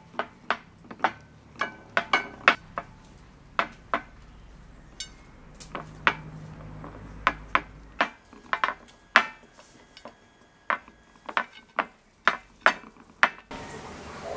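Irregular sharp metallic clinks and taps against a shallow metal pan, a few each second, some ringing briefly, as balls of mashed potato are pressed into hollow shapes in it. The clinks stop shortly before the end.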